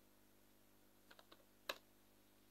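A few faint computer-keyboard keystrokes about a second in, then one sharper key click, as a short number is typed.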